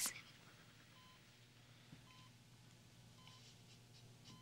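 Faint electronic beeps of a hospital patient monitor, one short beep at a single pitch about every second, over quiet room hum.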